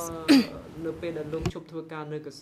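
A person's voice speaking, broken a third of a second in by a short, loud throat clearing, with a sharp click about a second and a half in.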